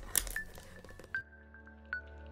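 A brief clatter of handling noise, then about a second in an intro jingle takes over: steady synth music with bright chiming pings.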